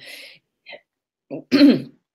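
A person clears their throat once, about a second and a half in, in a short voiced burst.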